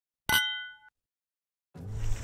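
A single bell-like metallic ding, struck once and ringing for about half a second before dying away. Near the end, a low, steady sound fades in.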